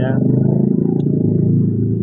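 Steady low rumble of vehicle engines idling close by, with faint crowd voices underneath.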